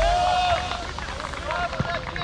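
Players shouting on a football pitch just after a penalty goal: a long call, then several short shouts over open-air ambience.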